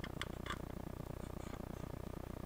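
A few faint clicks in the first half second as a crimped push-on connector on a ground wire is pressed onto a Hifonics subwoofer's speaker terminal, over a steady low hum.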